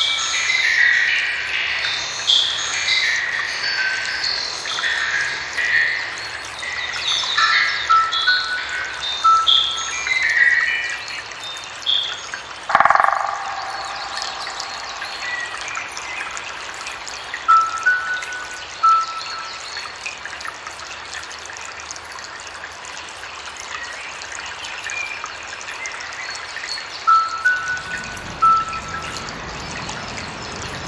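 Electronic music made of short, bird-like chirping tones that step in pitch, busy at first and thinning out later, with one rushing sweep about thirteen seconds in. Near the end a low rushing sound like water comes in.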